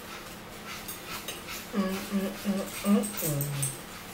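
A person humming four short closed-mouth "mm" notes, then a lower, longer one, the way someone hums while eating. Faint clicks and rustles run underneath.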